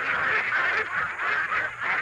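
A large flock of penned domestic ducks quacking together in a dense, continuous chorus of overlapping calls.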